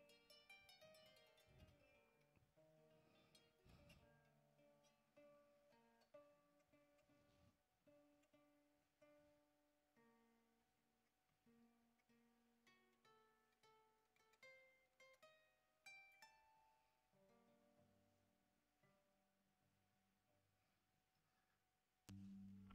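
Kora, the West African harp-lute, played faintly: single plucked notes ring out one after another, with a lower note held longer near the end.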